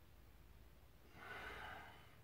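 A single breath breathed out, just under a second long, starting about a second in, from a person holding a backbend over a yoga wheel; otherwise near silence.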